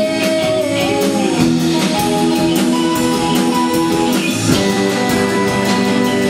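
Live band playing a song, with guitars, keyboard and drums, and a steady cymbal beat through the passage.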